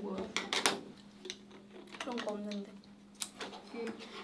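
Faint off-camera voices talking in short bits, with several sharp clicks and knocks in between, over a steady low hum.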